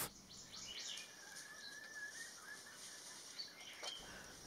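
Faint outdoor ambience with a distant bird's thin, wavering whistled call lasting about two seconds, and a few fainter high chirps.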